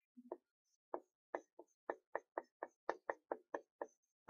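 Marker pen tapping and dragging on a whiteboard as characters are written: a run of short, sharp ticks, a few at first, then about four a second.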